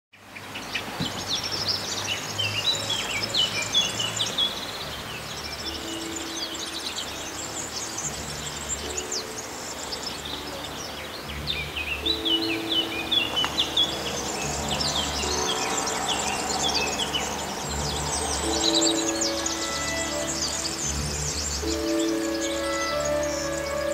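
Songbirds chirping and trilling in repeated bursts of quick high notes, over quiet background music of slow, held low notes that comes in about six seconds in.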